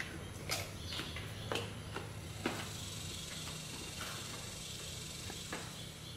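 A deer chewing food, with a few sharp crunches roughly a second apart, over a low steady hum.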